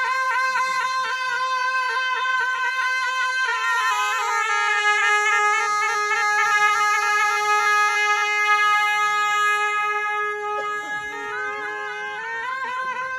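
Gyaling, the Bhutanese ceremonial shawm, playing a welcoming melody. It opens with quick wavering ornaments on one note, then steps down to long steady held notes from about four seconds in, and rises back near the end.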